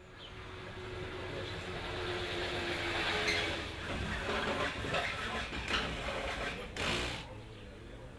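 Outdoor race-paddock background: a steady rumble of vehicle and engine noise that swells a little in the middle. A few short knocks or clatters come through, the broadest one near the end.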